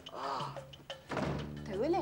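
A slap to a man's face, followed by his pained vocal reaction, groans and exclamations, as a music cue ends.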